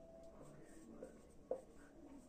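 Marker pen writing on a whiteboard: faint short strokes, the sharpest about one and a half seconds in.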